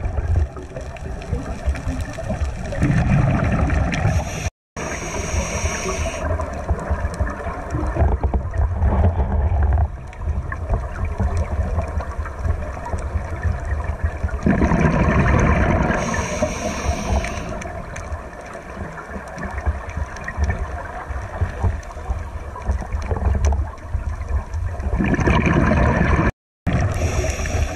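Underwater sound through a GoPro's waterproof housing: a steady low rumble with swells of scuba exhalation bubbles from a regulator, coming about every five to six seconds. The sound drops out for a moment about four and a half seconds in.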